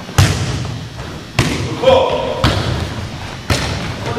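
A volleyball being struck during a foot volleyball rally: four sharp thuds about a second apart, with a short shout between them.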